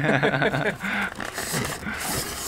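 A person laughing in short bursts.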